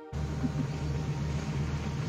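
A steady low hum under a hiss of outdoor background noise.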